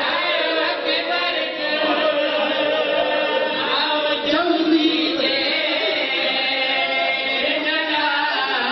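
Several men's voices chanting a mourning lament together into a microphone, in long held, wavering lines without a break.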